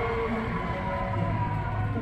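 Slot machines playing short electronic tones and jingles that step between pitches, over a steady low hum that grows about a second in.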